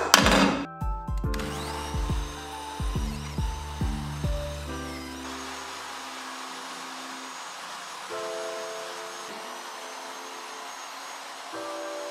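Calm background music with a soft beat and sustained chords, over the steady whirr of a benchtop drill press running as it drills into an aluminium extrusion. The beat drops out about halfway, leaving the chords and the drill's whirr.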